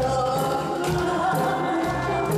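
A woman singing a Korean trot song into a handheld microphone, amplified through a PA speaker, with long held and gliding notes over a backing track with a steady beat.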